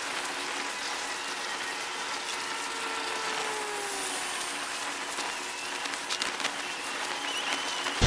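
Plastic cling film rustling and crackling as it is spread and pressed over a hole in the sand, over a steady hiss, with a few sharper crackles about six seconds in.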